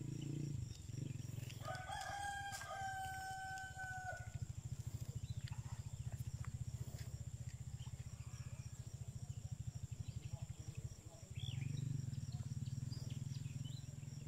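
A rooster crowing once, a single long call starting about two seconds in, over a faint steady low rumble.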